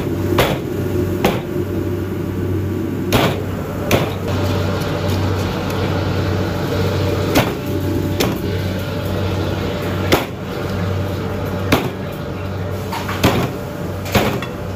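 Cleaver chopping a raw goose on a thick wooden chopping block: sharp single blows at irregular intervals, about nine in all, over a steady low hum.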